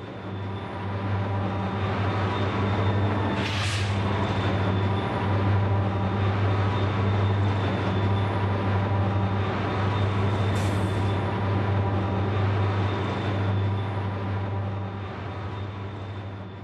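Diesel locomotive engines running with a steady low drone as the locomotives pass, with two short hisses, one about three and a half seconds in and one about ten and a half seconds in.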